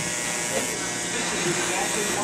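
Corded electric hair clippers buzzing steadily as they edge the front hairline, with voices in the background.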